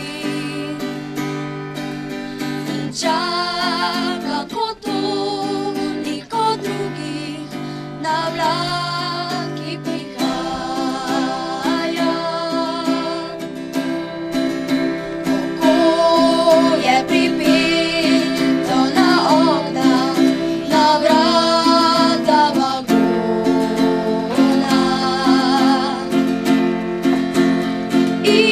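Children singing a song together to strummed acoustic guitar.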